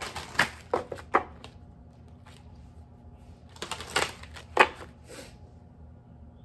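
A deck of cards being shuffled by hand: two short bursts of quick card slaps and flicks, one at the start and another about four seconds in.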